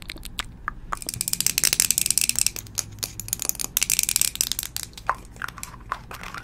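Close-miked crackling and clicking from hands handling small plastic makeup containers, in two dense bursts, the first about a second in and the second shorter, near the middle, with scattered clicks between.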